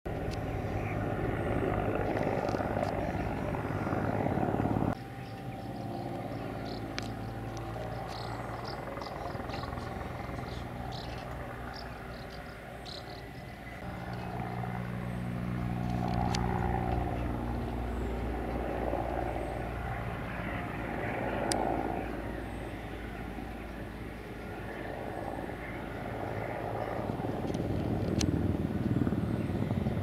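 Mil Mi-24V 'Hind' attack helicopter flying a display: the main rotor beats and its twin turboshaft engines run. The sound is loud at first, drops abruptly about five seconds in, then swells and fades again as the helicopter manoeuvres.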